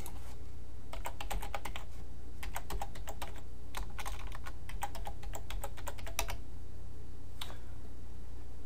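Typing on a computer keyboard in several short runs of keystrokes, with pauses between them, and one lone click near the end.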